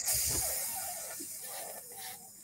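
A breathy hiss that fades steadily away over about two seconds, with a faint indistinct voice underneath.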